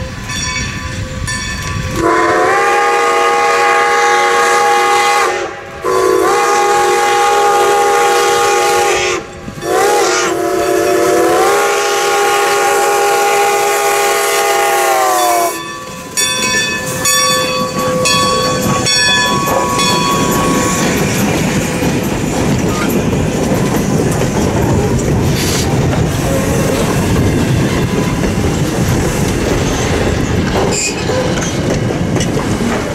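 Strasburg Rail Road No. 90, a 2-10-0 Decapod steam locomotive, blowing its chime steam whistle in the grade-crossing signal, long, long, short, long, each blast sliding up to pitch, with a bell ringing. Then the engine and its coaches pass close by, rumbling and clattering over the rails.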